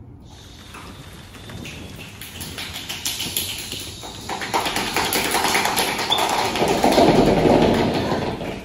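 Hands imitating rain: fingers tapping on palms and hands clapping and patting, a dense patter that grows steadily louder into a heavy downpour sound near the end.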